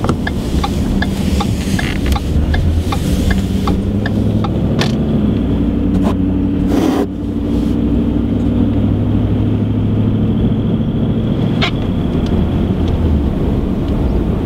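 Ford pickup truck heard from inside the cab while driving: a steady low engine and road hum. A quick, regular ticking runs through the first five seconds, with a brief louder rush about seven seconds in and a single click near the end.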